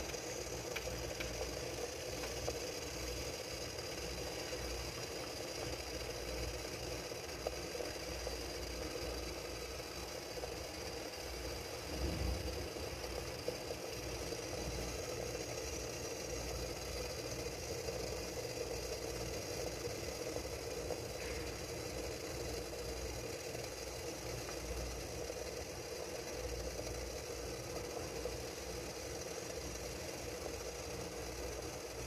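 Water boiling in a steamer pot under steaming rice cakes: a steady rumble and light rattle, with one brief louder knock about twelve seconds in.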